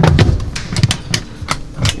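Lift-up wooden overhead cabinet doors on gas struts being pulled shut: a quick series of thuds and sharp clicks as the doors close and latch.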